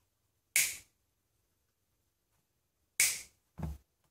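Side cutters snipping the ends off a soldered copper wire link: two sharp snaps about two and a half seconds apart, followed by a softer thud as the cutters are set down on the bench.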